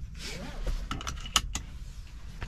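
Car seat belt pulled out of its retractor with a short whirr that rises and falls in pitch, followed by a few sharp clicks as the belt tongue goes into the buckle.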